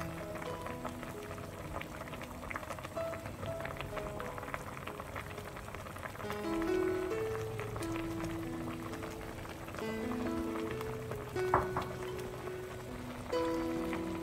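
Winter melon soup boiling in a pot, a faint crackly bubbling, under soft background music of held melody notes. One brief louder sound about eleven and a half seconds in.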